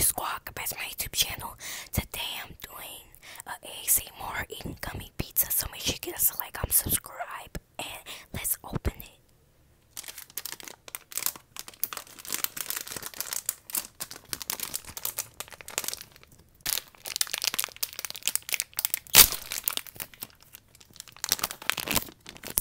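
Plastic wrapper of an e.frutti gummy pizza candy package crinkling in dense, sharp crackles as it is handled right up against the microphone, with a short pause about nine seconds in.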